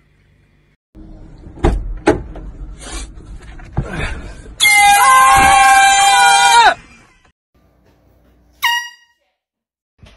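A handheld canned air horn blasts for about two seconds in one loud, steady, piercing note. Its pitch sags just before it cuts off. Knocks and rustling come before it, and a short sharp burst follows near the end.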